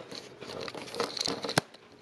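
Rustling and crinkling handling noise, with one sharp click about one and a half seconds in.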